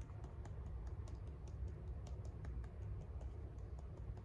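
A paintbrush dabbed and tapped against a painted board, giving light, irregular clicks several times a second over a low steady rumble.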